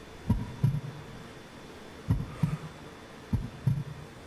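A heartbeat sound effect: slow low double thumps, lub-dub, three times, over a faint steady hum.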